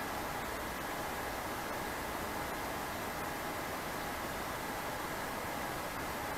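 Steady background hiss of room tone, even and unchanging, with no distinct event.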